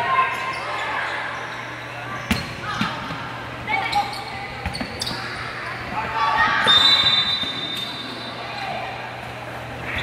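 A basketball bouncing on a hardwood gym floor, a few sharp thuds, under shouting voices that echo around a large hall.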